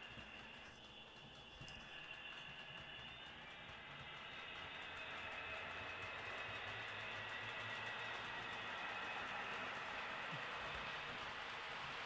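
HO-scale Proto 2000 GP20 model locomotive running on the track: a faint, steady whir of its electric motor and wheels, with a thin high whine. It grows gradually louder as the throttle is turned up toward almost full speed.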